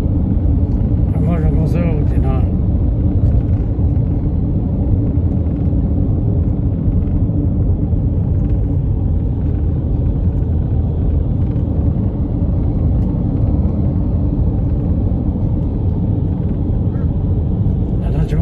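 Steady low rumble of road and engine noise inside a moving car's cabin. A voice is heard briefly about a second in.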